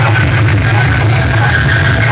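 A DJ sound system's stacks of horn loudspeakers and bass cabinets blasting music at full volume. It is loud and steady, with heavy bass and a harsh, noisy upper range.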